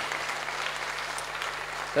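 Applause from a congregation: an even patter of clapping, with a steady low hum under it.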